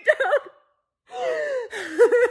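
A woman crying: a short wavering sob, a pause of about half a second, then a long crying wail that falls in pitch.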